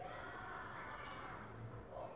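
A domestic cat meowing, one drawn-out call lasting about a second.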